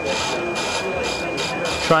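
Small wood lathe running with a steady high whine while a turning tool takes light back-and-forth cuts on the spinning pen blank, a continuous hissing scrape of wood as the high spots come down to the bushings.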